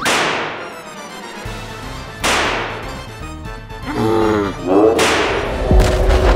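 Cartoon rocket-launcher sound effects: three sharp shots, each trailing off, over background music. A short wavering creature cry sits between the last two shots.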